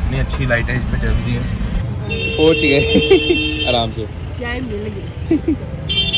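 People talking inside a moving car over the low rumble of the road. The rumble cuts off about two seconds in, and a steady high tone sounds for about a second and a half among excited voices.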